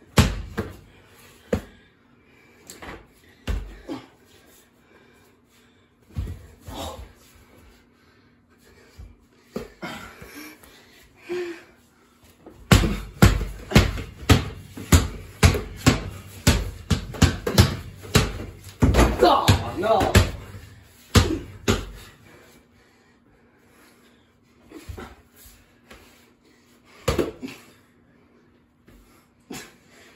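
Small basketball being dribbled on a hard floor in a small room: scattered bounces at first, then a fast, steady run of bounces for about ten seconds in the middle, thinning out again near the end.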